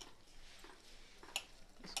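Faint wet squishing of a hand kneading flour- and curd-coated soya chunks in a steel bowl, with one short sharp click a little over a second in.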